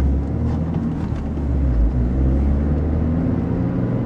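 Passenger car's road and engine rumble heard inside the cabin while the car brakes hard and swerves at about 55 km/h. The deep, steady rumble has a wavering engine tone over it.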